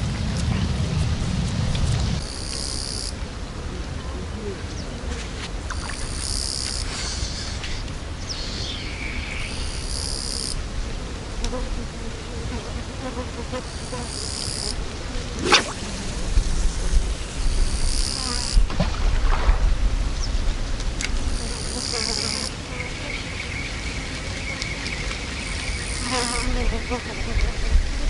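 An insect calling outdoors: a high buzz of about a second, repeated roughly every four seconds, over a low rumble of wind on the microphone. A single sharp sound stands out about halfway through.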